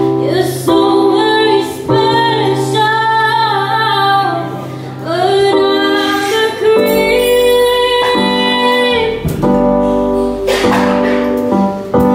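A woman singing a jazz song live, holding long notes that waver in pitch, while she accompanies herself on a Korg electric keyboard.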